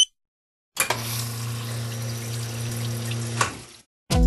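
Drinks vending machine dispensing into a plastic cup: a sharp click, then a steady pump hum with liquid pouring that starts about a second in and stops shortly before the end.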